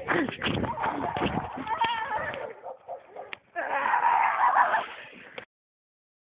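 Young voices crying out without words in wavering, drawn-out calls, over rustling noise from the camera being handled. The sound cuts off suddenly about five and a half seconds in.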